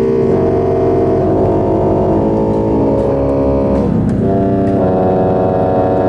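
Pipe organ playing loud held chords of a contemporary piece, dense clustered harmony over a deep bass, shifting to new chords a few times.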